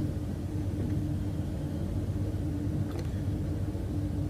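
Steady low background rumble with a faint even hum.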